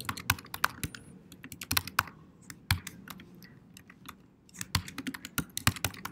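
Typing on a computer keyboard: quick, irregular key clicks in two runs, thinning out in the middle before picking up again about three-quarters of the way through.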